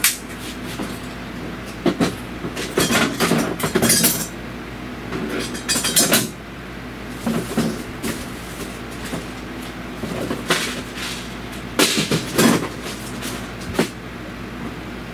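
Irregular clanks, knocks and scrapes of hand tools and metal parts being worked on in a truck's engine bay, in clusters, with the loudest about 3 to 4 seconds in, around 6 seconds and near the end. A steady low hum runs underneath.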